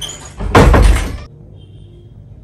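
A sudden loud burst of noise about half a second in, lasting under a second and dying away, with a heavy low thud.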